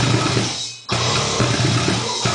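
Brutal death metal with drums, played along on a six-string electric bass (Ibanez SR506) with fast finger-picking. About half a second in the music fades into a short break, then crashes back in abruptly just under a second in.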